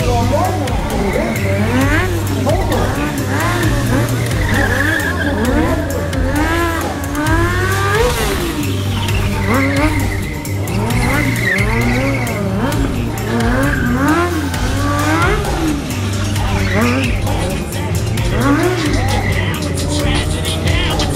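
Kawasaki 636 sport bike's inline-four engine revved up and down over and over during a stunt run, with bursts of tyre squeal as the rear wheel slides on the pavement.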